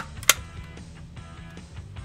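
One sharp plastic click from the Gokai Gun toy blaster's mechanism, worked by hand while it has no batteries in it, about a third of a second in. Quiet background music runs under it.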